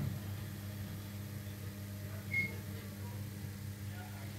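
Faint steady low hum, with a brief high beep a little over two seconds in.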